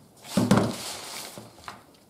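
Aluminium drink cans knocking against each other and the tabletop as they are taken out of a soft, foil-lined roll-up cooler bag: one sharp knock about half a second in, then about a second of rustling, and a small click near the end.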